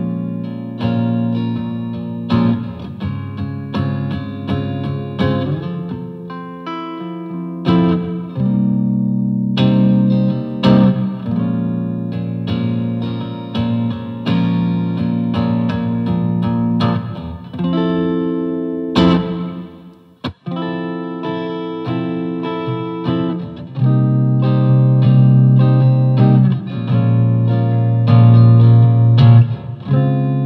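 Electric guitar played through a Blackstar HT-20R MkII valve head and HT-212VOC MkII 2x12 cabinet: an indie-style riff of picked chords. The riff stops for a moment about twenty seconds in, then resumes louder and fuller in the low end.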